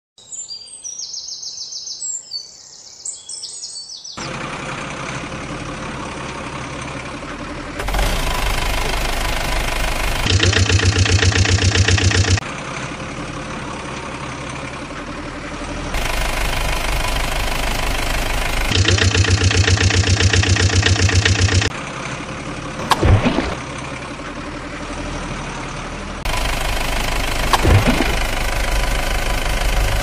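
Looped truck engine sound effects, idling and revving, that change abruptly every few seconds between quieter and louder, pulsing stretches. The first four seconds are high chirping.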